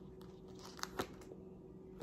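Quiet room with a steady low hum and a few soft clicks of tarot cards being handled, two of them close together about a second in.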